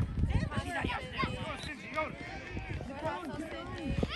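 Voices shouting across a children's soccer field, several calls overlapping at once, quieter than the close shouting either side.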